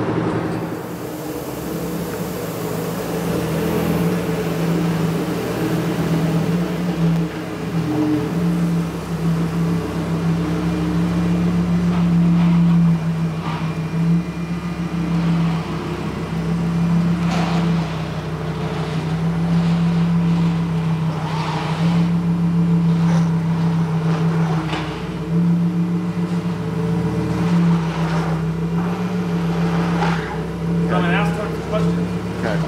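Lamborghini Huracán Evo's V10 engine running at low speed and idling, a steady low hum, with a few short knocks or clicks in the second half.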